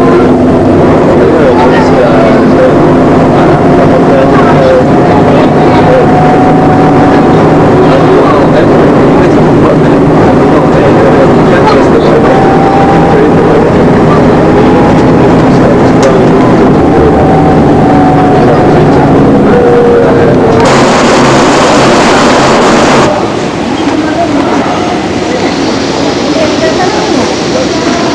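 Bus engine running steadily, heard from inside the passenger cabin with road and wind noise through the open window. About 21 seconds in a short burst of hiss is heard, then the sound drops abruptly.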